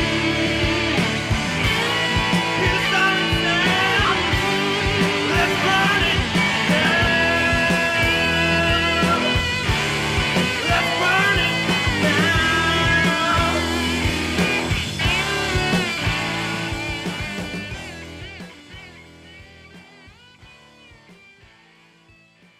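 Full-band rock song: a man singing over electric guitar, bass guitar and drums. It fades out over the last four to five seconds.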